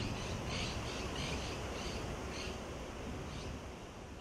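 Countryside ambience with repeated short, high chirping calls, about two a second, over a low hiss, fading out steadily.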